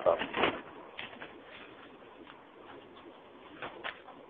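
A man's lecturing voice trails off, then a quiet pause of faint background noise with a few soft, brief sounds.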